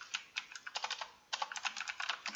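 Typing on a computer keyboard: a run of quick key clicks, with a brief pause about a second in before a faster run.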